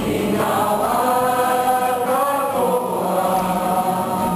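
A kapa haka group singing a waiata together, many voices holding long, sustained notes that glide between pitches.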